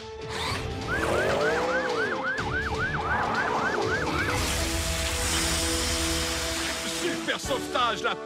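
Cartoon siren sound effect: a fast warble of about three to four rise-and-fall sweeps a second over music, followed by a long whooshing hiss while held music notes continue.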